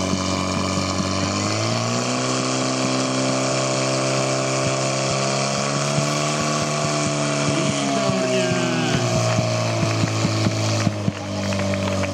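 Portable fire pump engine running hard under load, its pitch rising about two seconds in as water is pushed out to the jets, holding steady, then dropping back around nine seconds in. A scatter of short clicks and knocks comes near the end.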